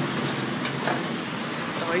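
Steady background noise of a busy street-side eatery, with faint voices and one short click or clink about two-thirds of a second in.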